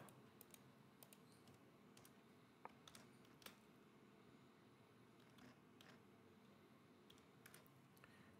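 Faint computer keyboard typing: a few scattered, separate keystroke clicks against near silence.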